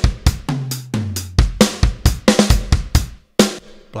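Addictive Drums 2 software drum kit (Black Velvet kit, 'Crisp With Plate' preset) playing a big rock-sounding beat of kick, snare, hi-hat and cymbals. It stops about three and a half seconds in.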